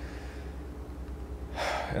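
A man's quick intake of breath about a second and a half in, just before he speaks again, over a low steady hum.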